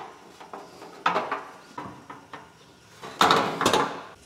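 A painted car fender being hung on wall hooks, knocking and scraping against the hooks and the corrugated sheet-metal wall in a few short bouts. The loudest comes near the end.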